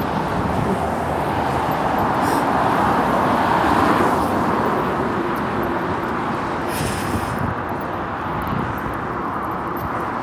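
Road traffic noise: a car passing, its tyre and engine noise swelling to a peak about four seconds in and then fading.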